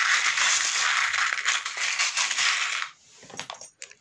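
Many small metal charms shaken together in a box: a dense, continuous rattle and jingle that stops about three seconds in, followed by a few separate clicks as loose charms land on the table.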